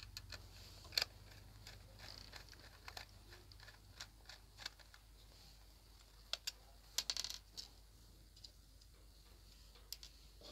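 Faint, scattered small metallic clicks and taps of a screwdriver unscrewing the screws of a digital TV decoder's metal case, with loose screws dropped onto a wooden table; a quick run of clicks about seven seconds in.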